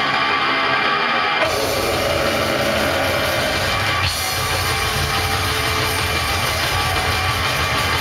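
Heavy metal band playing live through a club PA: distorted electric guitar chords, with the drums and low end coming in fully about a second and a half in and the full band driving on after that.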